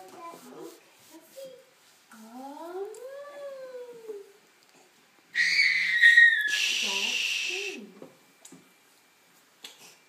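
Wordless vocalisations from a small child: a rising-and-falling cry about two seconds in, then a loud, high-pitched squeal lasting about two seconds, about five seconds in.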